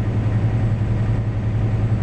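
Semi truck's diesel engine and road noise at highway cruising speed, heard inside the cab as a steady low drone.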